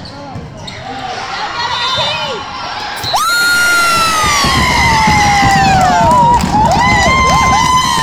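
Volleyball players and spectators screaming and cheering in a gym. About three seconds in, one long high scream starts suddenly and slides slowly down in pitch. Several shorter rising-and-falling shouts follow near the end, over crowd chatter and the thud of ball and feet on the court.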